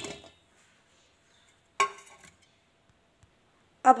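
A single sharp clink on a steel mixing bowl holding cut lemons and carrots, ringing briefly, about two seconds in; otherwise near quiet.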